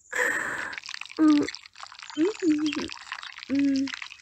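A woman's breathy gasp, then three short wordless sounds of pleasure, over wet squelching mud sound effects.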